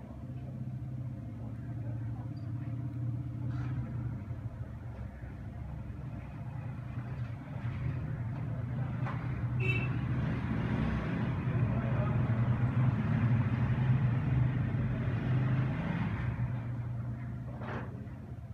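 Motor-vehicle noise, as of traffic going by, over a steady low hum. The vehicle noise builds from about halfway through and fades near the end.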